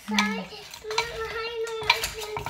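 A wooden pestle knocking about three times in a tall clay mortar as crab is pounded into papaya salad (som tam), the last knock the loudest. A voice holds a long high note alongside.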